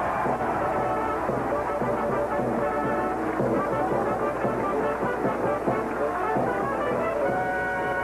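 Band music with brass playing sustained chords, on a worn old soundtrack with crackle; a long held chord comes in near the end.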